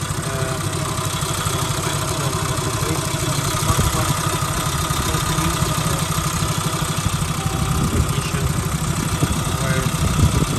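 A 1995 Suzuki Jimny Sierra's 1.3-litre eight-valve four-cylinder engine idling steadily, heard close up in the open engine bay with an even, fast pulsing beat.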